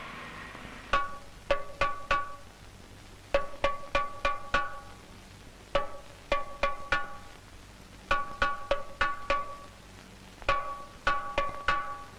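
Film background score: five short runs of four or five quick plucked string notes, spaced about two and a half seconds apart, with quiet gaps between them over a faint low sustained tone.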